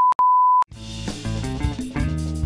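Colour-bar test-tone beep, a steady high tone broken by a brief gap, cutting off about two-thirds of a second in. Band music with drums and bass then starts.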